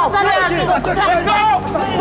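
Several voices overlapping in agitated chatter, with a steady low hum underneath.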